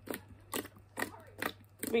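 Thick white slime popping under fingertip pokes and presses: about half a dozen short, sharp pops spread across the two seconds.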